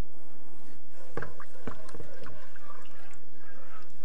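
Wooden spoon stirring liquid in a nonstick pot, with light knocks of the spoon against the pan, the two plainest a little past one second and about half a second later.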